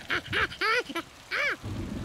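A cartoon monkey's voice giving four short, squeaky, happy calls, each rising and falling in pitch, over a light hiss of falling rain.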